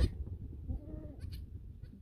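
Savanna goat bleating: a call trailing off at the start, then a fainter wavering bleat about a second in.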